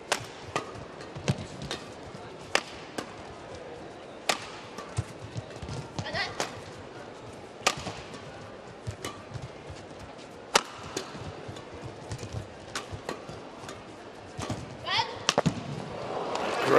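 A long badminton rally: sharp cracks of rackets striking the shuttlecock, coming irregularly about once or twice a second. A few short squeaks from shoes on the court and a steady crowd murmur run beneath them.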